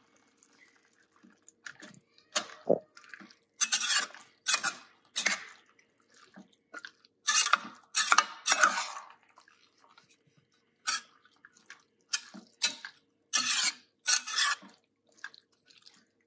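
A metal spoon stirring chickpeas through thick tomato gravy in a stainless steel pot: irregular wet squelches and scrapes against the pan, coming in short strokes with pauses between.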